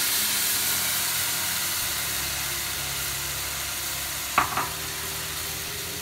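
Tomato and green-chilli purée sizzling as it fries in hot ghee in a kadai, stirred with a wooden spatula; the sizzle slowly fades. One sharp knock about four and a half seconds in.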